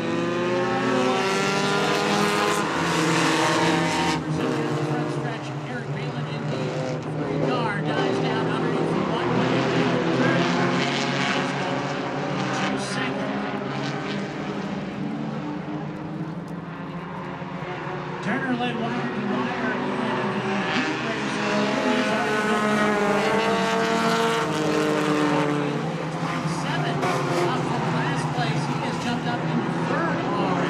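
A pack of stock race cars running together on a paved oval, their engines revving up and falling away as they pass through the corners. Several cars are heard at once, swelling loudest as the field goes by.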